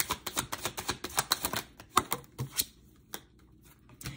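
Tarot deck being shuffled by hand: a fast run of crisp card clicks that stops about two and a half seconds in, followed by a soft tap or two.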